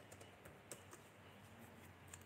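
Near silence: faint room tone with a few soft, faint clicks.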